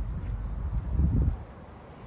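Wind buffeting the microphone as a low rumble, with a stronger gust about a second in that dies away shortly after.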